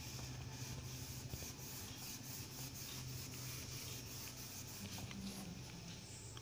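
A whiteboard being wiped clean: a quick run of short rubbing strokes across the board's surface, over a faint steady hum.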